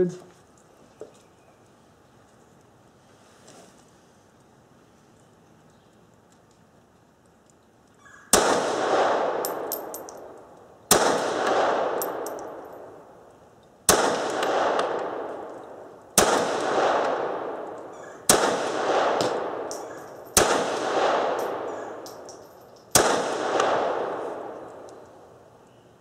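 Seven pistol shots fired one at a time, about two to three seconds apart, starting about eight seconds in. Each is followed by a long fading echo.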